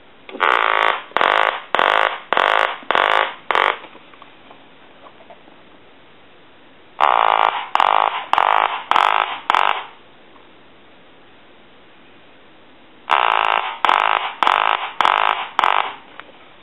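Vintage duck novelty telephone ringing with its repaired quacker: three rings a few seconds apart, each a run of quick quacks about two a second, set off by the incoming ring signal.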